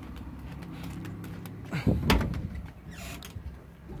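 Truck engine idling steadily, with a knock and a rustle about two seconds in.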